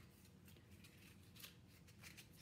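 Near silence with a few faint, short clicks and rubs: a small plastic cosmetic tube and its packaging being handled.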